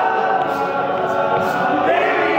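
Male a cappella group singing in close harmony, many voices holding chords with no instruments. Near the end one voice slides up into a higher line.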